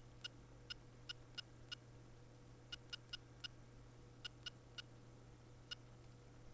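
Clicking sound effects from the FluidSIM-P pneumatic simulation software as the simulated valves and cylinders switch during a running circuit. They are short, faint, identical clicks, about fourteen of them, coming irregularly in small clusters.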